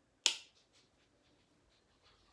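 A single sharp plastic click from a hand-held Maybelline Fit Me powder compact, about a quarter of a second in, then only faint handling noise.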